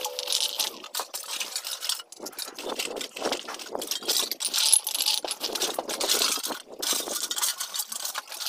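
Empty aluminium drink cans and plastic bottles clattering and clinking as they are picked through and tossed by hand, an irregular rapid run of metallic clinks and rattles.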